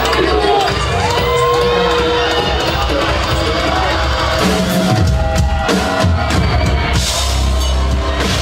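Heavy rock band playing live: drum kit and guitars, with low sliding notes a few seconds in, and the full band coming in heavier near the end.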